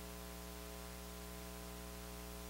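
Steady electrical hum with a faint hiss underneath, unchanging throughout.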